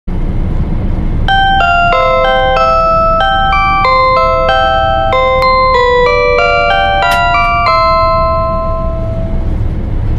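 Onboard PA chime of a JR Hokkaido KiHa 281-series diesel express train, playing a bright melody of about twenty short bell-like notes at about three a second, the last note left ringing; it opens the automated announcement before arrival at the terminal. Underneath is the steady low rumble of the train running.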